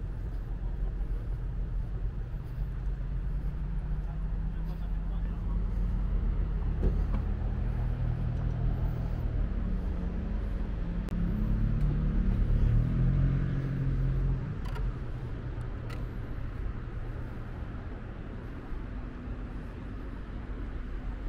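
A motor vehicle's engine running, its hum growing louder toward the middle and cutting off abruptly about fourteen seconds in.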